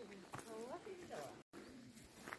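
Faint, indistinct talk of nearby visitors with a few footsteps on stone steps. The sound drops out completely for an instant about one and a half seconds in.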